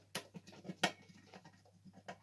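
Screwdriver turning a screw into the metal heating plate of a multicooker: a quiet string of small irregular metal clicks and scrapes, the loudest a little under a second in.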